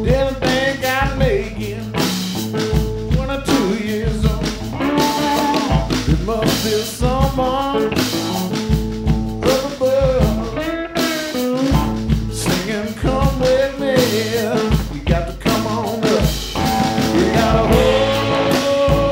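Blues-rock band playing live: a man singing over electric guitar, with bass and drums keeping a steady beat.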